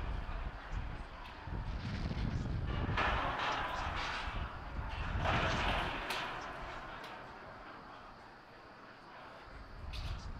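Launch-pad ambience at a fuelled Falcon 9: a low wind rumble on the microphone with two surges of hissing from propellant venting, about three and five seconds in, fading off after about six seconds.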